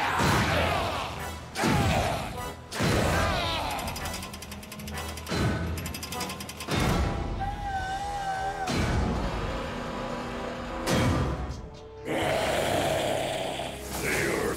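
Cartoon action soundtrack: dramatic background music with a string of sudden crashes and mechanical sound effects, about five hits across the span.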